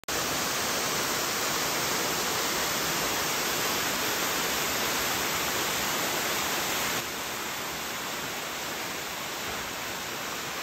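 Waterfall spilling over granite into a plunge pool: a steady rush of falling water, dropping a little in level about seven seconds in.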